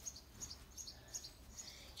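Faint birdsong: short high chirps repeated every fraction of a second.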